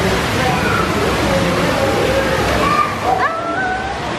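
Steady rush of water circulating and pouring into a stingray touch tank, with voices over it.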